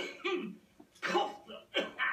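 A man coughing in a fit: about four harsh, throaty coughs with short gaps between them.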